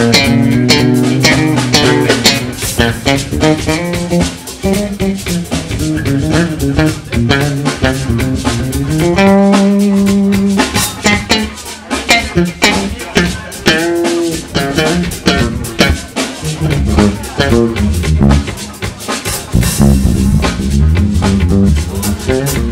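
Live jazz band playing, with guitar, bass and drum kit: held notes and chords over a steady run of drum hits.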